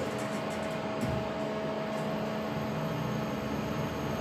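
Kone EcoDisc gearless traction lift car travelling upward: a steady hum with a faint constant whine, and a couple of faint clicks about one and two seconds in.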